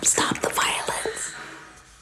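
Whispered voices, breathy and hissing, dying away over the first second and a half.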